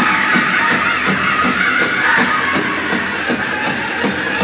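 Powwow drum group singing a grand entry song: a large drum struck in a steady beat, about three strokes a second, under high-pitched group singing that swells in strength right at the start.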